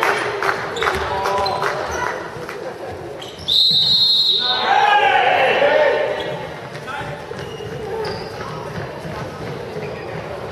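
A handball bouncing and knocking on a sports hall floor, echoing in the hall. About three and a half seconds in, a referee's whistle sounds one sharp, loud blast, followed at once by a burst of shouting young voices.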